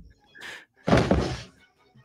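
A single heavy thud about a second in, a cartoon sound effect from the animated clip, fading quickly, after a faint short sound just before it.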